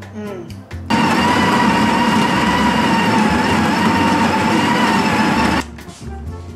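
Small electric kitchen appliance motor whirring steadily with a high whine. It starts abruptly about a second in and cuts off near the end.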